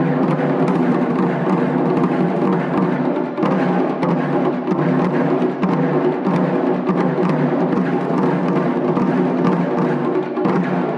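Taiko ensemble drumming: several players strike taiko drums on slanted stands with bachi sticks in a fast, dense, continuous rhythm.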